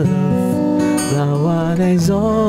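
A man singing a slow worship song to his own acoustic guitar strumming, the sung notes sliding between pitches.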